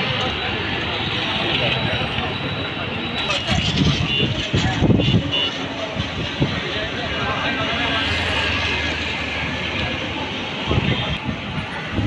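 Busy street noise: vehicles passing and people talking, with louder low rumbles about four to five seconds in and again near the end.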